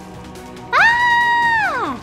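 A high-pitched scream, held for about a second and then falling in pitch as it dies away, over background music.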